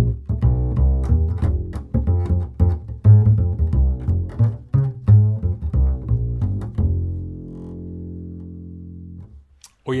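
Double bass with Pirastro Evah Pirazzi strings played pizzicato: a groovy, funky line of quick plucked low notes, ending about seven seconds in on a low note left to ring and fade away.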